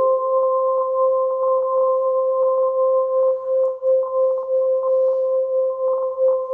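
Contemporary music for horn and live electronics: a single steady, pure-sounding tone near 500 Hz is held throughout, with a fainter tone an octave above flickering in quick pulses. A few lower tones fade out just after the start.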